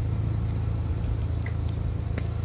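1990 Mazda RX-7 GTU's 13B twin-rotor rotary engine idling steadily, a low even hum with a fast fine pulse.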